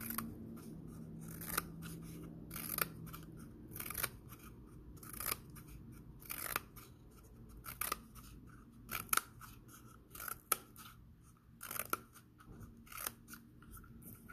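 Small scissors snipping a cardboard toilet paper tube, one crisp cut at a time, about a cut a second.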